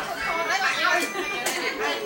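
Chatter: several people talking over one another, with two brief clicks about a second in and half a second later.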